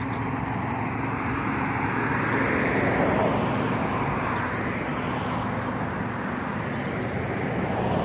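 Road traffic: a steady rush of cars on a nearby street, swelling as a vehicle goes by a few seconds in.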